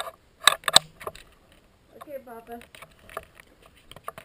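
Sharp clicks and knocks of equipment being handled close to the microphone, the two loudest about half a second in, followed by a few fainter ones.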